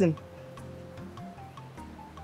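Soft background film score: quiet sustained tones over low held notes, with a faint clock-like tick about three times a second.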